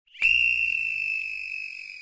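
A small whistle blown in one long steady high note that starts a moment in, then sags in pitch and fades as the breath runs out near the end.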